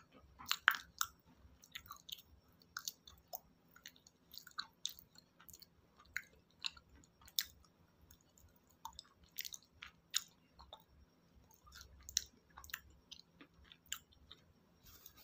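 A person chewing raw green salad vegetables close to the microphone: sharp crunches at an uneven pace, a couple a second, the loudest about a second in.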